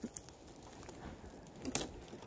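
Faint crunching and crackling of snow as a snow-covered fallen tree branch is grabbed and pulled up out of the snow, with a brief louder rush near the end.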